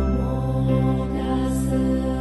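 Meditative background music of a chanted Buddhist mantra: sustained, drone-like voices held over a steady low tone.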